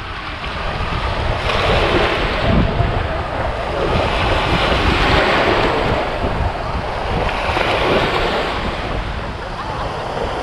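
Small waves washing up a sandy beach and foaming at the water's edge, surging three times, with wind rumbling on the microphone.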